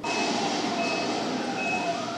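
DVD menu intro sound effects heard through a TV speaker: a sudden burst of noise with a short, high beep repeating about every three-quarters of a second, three times, over a slowly gliding tone.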